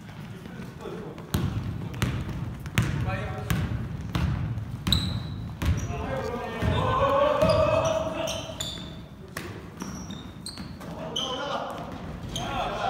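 Basketball bouncing on a hardwood gym floor, with sneakers squeaking and players calling out in a large gym. A loud call comes about halfway through.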